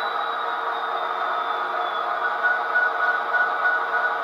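Soundtraxx Tsunami sound decoder in an HO-scale Athearn Genesis SD70ACe model playing a diesel locomotive's steady engine sound through its small onboard speaker as the model rolls along the track.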